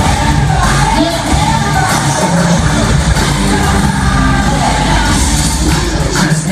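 Loud live concert music over a stadium PA with a heavy steady bass and a voice singing, with the crowd yelling and cheering along.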